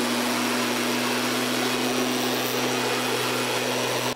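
STIHL backpack mist blower's two-stroke engine running at a steady speed as it blows out acaricide spray: a constant loud drone with an unchanging hum underneath.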